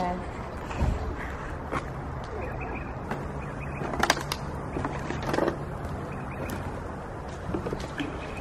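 Footsteps over rubble and scattered debris outdoors, with a few sharp scuffs and clicks against a low steady background hum.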